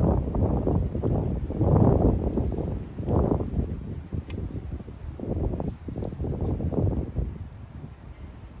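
Suffolk Pony two-stroke stationary engine running unevenly, its sound surging and fading irregularly, mixed with wind on the microphone; it quietens about seven seconds in.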